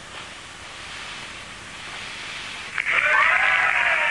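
Steady faint hiss like radio static. About three seconds in, a sudden loud burst of studio-audience laughter.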